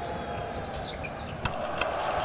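Basketball being dribbled on a hardwood arena court, with short clicks and squeaks over steady arena crowd noise. A sharp bang comes about a second and a half in, and the crowd swells right at the end as the player goes up at the rim.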